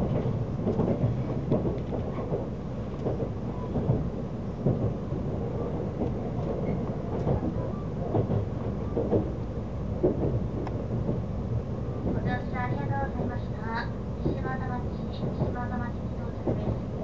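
Inside the cabin of an electric limited express train running along the line: a steady low rumble of wheels on rail. Near the end, short repeated high ringing tones come and go.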